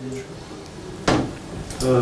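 Quiet voices in a small room, a single sudden sharp sound about a second in, and a man starting to speak near the end.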